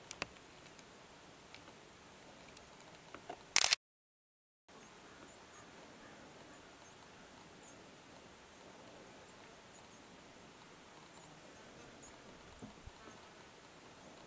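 Faint open-air meadow ambience with a scatter of tiny high chirps. A short loud burst of noise comes about three and a half seconds in, and the sound then cuts out completely for under a second before the faint ambience resumes.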